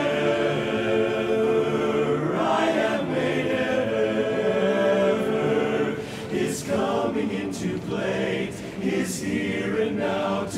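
Barbershop chorus of men singing a cappella, holding full close-harmony chords that move slowly, with several crisp "s" consonants sung together in the second half.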